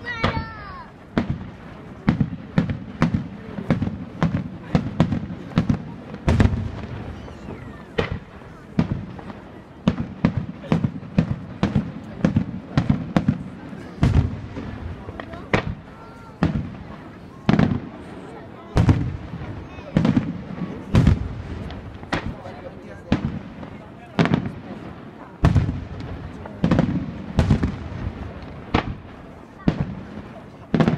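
Aerial firework shells bursting in a continuous barrage, sharp bangs coming one to three a second, each with a low rumbling echo.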